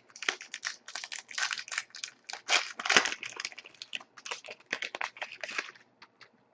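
Trading cards being handled and a foil card-pack wrapper crinkled and torn open: an irregular run of quick, dry rustles and crackles.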